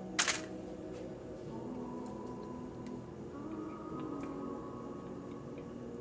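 A brief crinkle of the aluminium foil lining a baking tray as a ball of cookie dough is set down on it, about a quarter second in. After that there is only faint low background sound.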